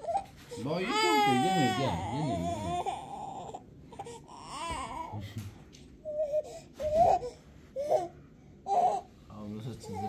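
A crawling baby crying: one long, wavering wail about a second in, then a shorter cry and a string of short, sobbing cries spaced about a second apart.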